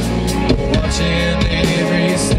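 Live rock band playing: electric guitar over a drum kit keeping a steady beat.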